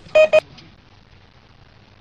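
Two short electronic beeps in quick succession at one steady mid pitch, Morse-code-style SOS beeping, followed by faint room noise.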